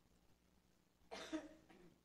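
Near silence, then a single short cough about a second in.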